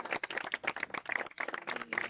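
Applause from a small group: many hands clapping in a dense, irregular patter that stops just after the end.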